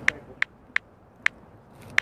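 About five short, sharp clicks at uneven intervals, roughly one every half second, over a low background.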